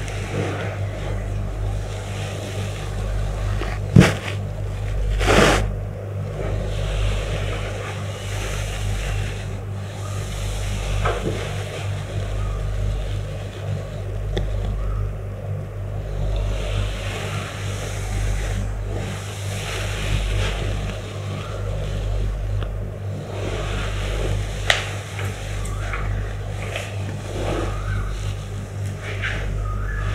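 Rustling of cloth and sheets as a client's legs are lifted and stretched in a Thai massage, over a steady low rumble. There is a sharp knock about four seconds in.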